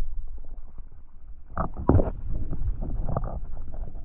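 Muffled low rumble and sloshing of water, heard through the microphone of a GoPro submerged in an aquarium, with a couple of short knocks about one and a half to two seconds in.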